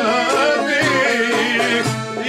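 A man singing a Greek folk song with a wavering, ornamented vocal line, accompanied by a strummed laouto. A low drum beat falls about once a second.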